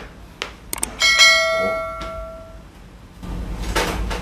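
A couple of short clicks, then about a second in a single bright bell ding that rings on for about a second and a half and fades: the notification-bell sound effect of an animated subscribe button.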